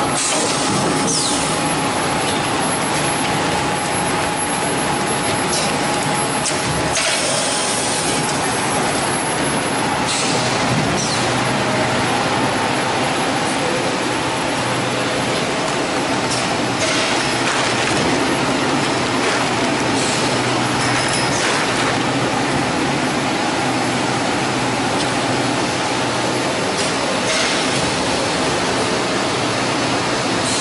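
Steady, loud running noise of a PET bottled-water production line's machinery at its film shrink-wrapping packer, with a low hum and short hissing bursts several times.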